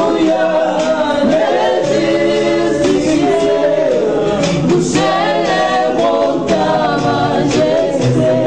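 Several voices singing a gospel worship song together, a woman's voice among them, with little or no instrument behind them.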